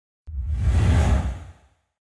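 Whoosh transition sound effect with a deep bass rumble under it, swelling in just after the start and fading out after about a second and a half.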